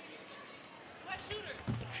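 A basketball bouncing on a hardwood court under faint arena crowd murmur, with a few faint voices in the second half.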